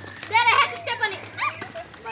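A child's high-pitched voice in a few short calls without clear words, over a faint steady low hum.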